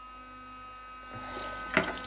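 Filtered water running from a narrow drinking-water tap into a small glass jar, growing louder about a second in, over a faint steady electrical hum.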